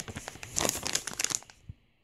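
Plastic dog-treat pouch crinkling as it is handled, in a run of rustles over the first second and a half that then dies away.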